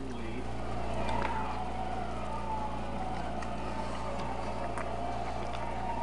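A siren wailing, its single tone slowly falling in pitch and then rising again near the end, over a steady low hum.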